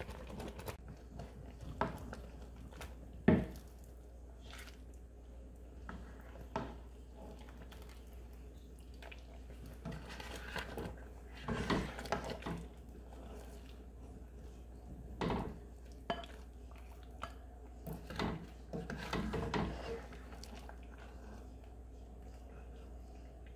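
Serving spoon knocking and scraping against a stone-coated cooking pot and a glass bowl as soft syrup-soaked curds are lifted across, in scattered separate clinks with one sharp knock about three seconds in.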